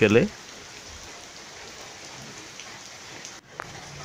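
Steady rain falling on waterlogged grass, puddles and leaves, an even hiss. It drops out briefly about three and a half seconds in.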